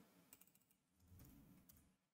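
Near silence, with a few faint clicks of a computer keyboard being typed on.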